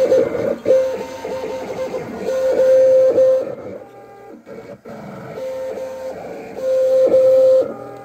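Vinyl cutting plotter cutting vinyl sheet: its carriage motors give a steady whine, each held for about a second, with short clicks and stops between moves and a quieter pause near the middle.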